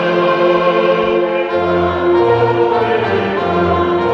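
Church congregation singing a hymn in harmony, held notes changing every second or so over a low bass part.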